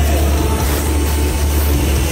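Live band playing loud through an arena PA, with a deep bass note held steady under a dense wash of band sound and no clear singing.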